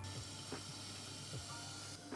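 Water poured slowly from a plastic measuring jug into a tilted stainless steel CO2 reaction bottle: a faint, steady trickling hiss.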